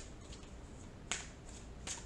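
A tarot deck shuffled overhand by hand, the cards giving two short sharp snaps about a second in and near the end, with a few fainter ticks between.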